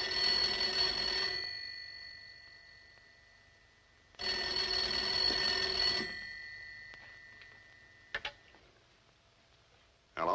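1950s desk telephone's bell ringing twice, each ring about a second and a half long and dying away slowly. A couple of sharp clicks follow about eight seconds in as the receiver is picked up.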